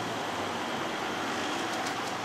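Steady, even background hiss of room tone, with no distinct events.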